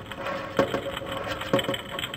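Acoustic guitar played in a slow, sparse rhythm: a sharp strum about once a second, each followed closely by a lighter second stroke.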